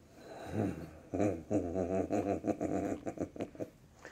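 Domestic cat growling low while mouthing a catnip sock: one short growl about half a second in, then a longer run of rapid pulsing growls that stops shortly before the end.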